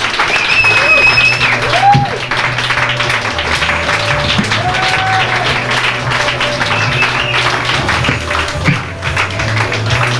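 Live band playing in a small bar, loud and steady, with a held low bass note and a few gliding higher notes under crowd noise and voices.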